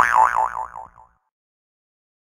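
Cartoon 'boing' sound effect: a springy, wobbling tone that dips slightly in pitch and fades out after about a second.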